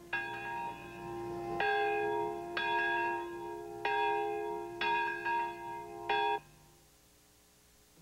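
A large memorial bell struck about six times, roughly a second apart, each strike ringing on with several steady overtones. The ringing cuts off suddenly near the end.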